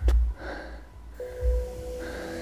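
A man breathing hard on an uphill climb, with low thumps on the body-worn microphone near the start and again about a second and a half in. A held music chord comes in just over a second in.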